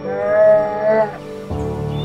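A single wavering, high-pitched bawl of about a second from a brown bear cub, over calm background music.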